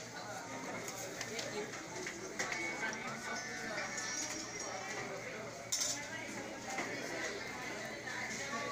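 Many people talking at once in a crowded hall, with clinks of serving spoons on steel plates and dishes, and one sharper clatter a little past halfway.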